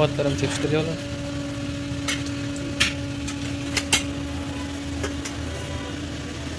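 A wire skimmer and ladle clinking against large steel cooking pots a few times, in short sharp clicks, over a steady low hum.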